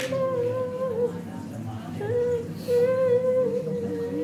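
A woman's voice singing a Nyidau, the Dayak Kenyah wailing lament for the dead, in long, slightly wavering held notes; the first dies away about a second in and a new one starts about two seconds in.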